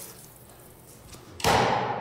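A roll of toilet paper thrown hard at a wall: a sudden impact with a short rush of noise about one and a half seconds in, after faint hiss.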